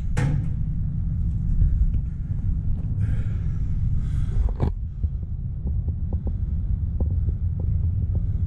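Steady low rumble of wind buffeting the microphone, with one sharp knock about four and a half seconds in and a few faint ticks after it.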